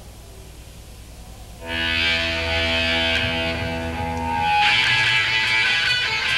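Live heavy metal band's electric guitar. After a brief lull with low hum, a chord rings out and is held about two seconds in, then the guitar comes in louder and fuller near the end, as the song begins.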